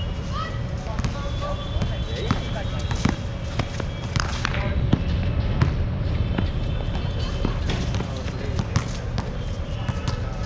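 A basketball bouncing on an outdoor hard court during a game, heard as scattered irregular thuds, along with players' feet and their distant shouts and calls.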